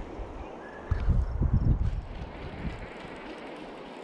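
Wind buffeting the microphone over the steady rush of a fast-running river, with a heavier gust about a second in that lasts about a second.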